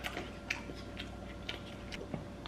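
Faint, light ticking, about two ticks a second, over a low steady room hum.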